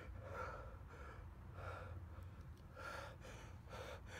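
A frightened man breathing heavily close to the microphone: about three audible breaths, over a low steady hum.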